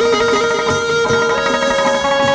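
Instrumental hát văn ritual music: a plucked-string lute melody over held, stepping notes, with a few light percussion strokes.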